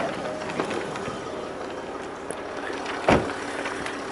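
A car door, the Jaguar XF's driver's door, shutting with a single thump about three seconds in, over a steady background of noise.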